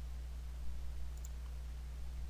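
Steady low electrical hum on the recording, with a couple of faint computer mouse clicks about a second in.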